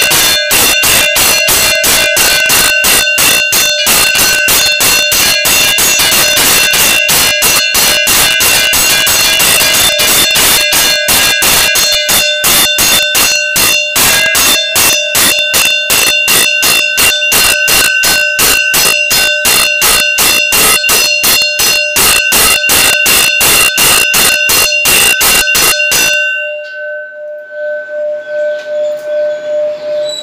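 Temple bell rung fast and steadily, about five strokes a second, for the lamp offering (aarti) to the deity. The ringing stops a few seconds before the end, and the bell's tone hangs on and fades.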